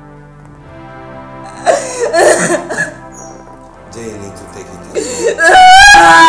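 Film soundtrack music with steady held tones, over which a loud voice with a strongly wavering pitch comes in about two seconds in and again near the end.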